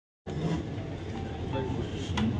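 Steady low rumble of room noise with faint, indistinct voices, starting a moment after a brief silence.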